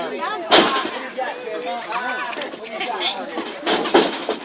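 Two sharp impacts of a wrestler's body hitting the wrestling ring mat, the first and loudest about half a second in, the second near the end, over crowd chatter.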